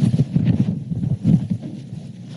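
Low rumbling and knocking handling noise on a table microphone, fading toward the end.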